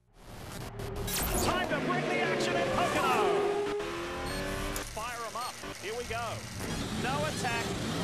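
Race car engines revving and passing, with repeated rising and falling pitch sweeps and a voice mixed in.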